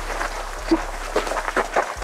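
Footsteps on dry dirt: a few irregular steps over a background of rustling noise as the walker and camera move.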